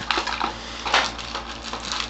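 Clear plastic accessory bag of case screws crinkling and rustling as it is handled, in several short crackly bursts.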